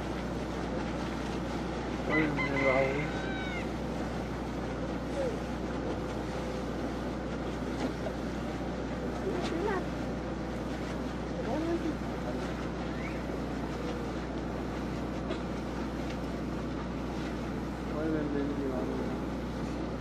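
A boat's motor running steadily, with brief distant calls carrying over it about two seconds in and again near the end.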